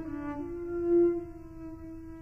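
Solo cello in its high register playing sustained notes: a change of pitch shortly after the start, then a long held note that swells to a loud peak about a second in and eases off.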